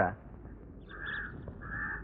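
A crow cawing twice, about a second in and again near the end, two short calls heard faintly behind the scene.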